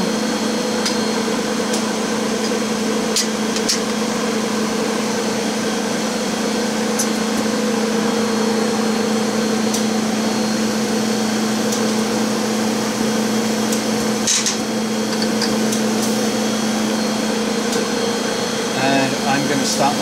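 Steady machine hum from the wafer bonder and its surrounding equipment, with a few sharp metallic clicks and knocks as the metal bond chuck is handled and set into the bond chamber.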